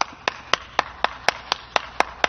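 One person clapping hands at a steady pace, about four claps a second.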